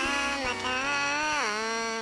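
A single drawn-out buzzy tone that slides down to a lower note about one and a half seconds in and then starts to fade: a descending wrong-answer sound.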